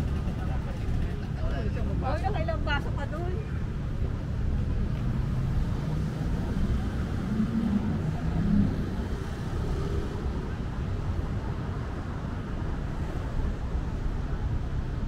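Steady low rumble of car engines and road traffic, with a person's voice briefly about two seconds in.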